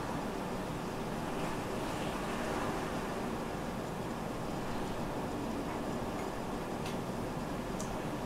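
Steady background noise, an even hiss and low rumble with no distinct events, and two faint clicks near the end.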